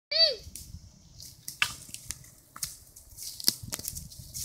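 A short, high cry falling in pitch at the very start, then scattered sharp cracks and rustling of feet and a stick in dry leaf litter and twigs on a woodland floor.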